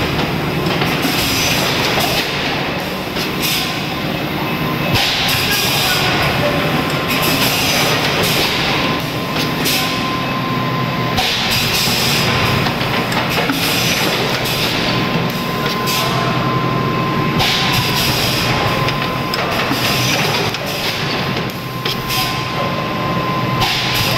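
PET jar blow moulding machine running: a continuous mechanical din with a thin steady tone through it and surges of hiss every few seconds.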